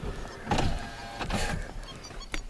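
A car's electric window motor whines as the glass moves, for about a second in the middle.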